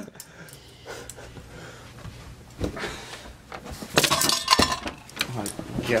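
Rummaging through bedding and clutter in search of a lost key: rustling of blankets, with a few sharp clattering knocks and metal clinks about two and a half seconds in and again around four seconds.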